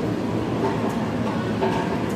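Steady background din of a restaurant dining room: a low rumble with faint distant voices.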